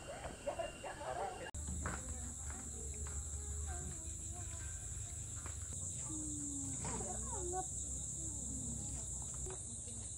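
A steady, high-pitched buzz of insects sets in about a second and a half in, where murmured cafe chatter cuts off. Faint distant voices come and go under the buzz.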